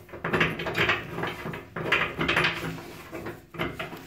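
Bathtub drain stopper being unscrewed by hand from the drain, metal threads scraping and creaking in a run of short turning strokes.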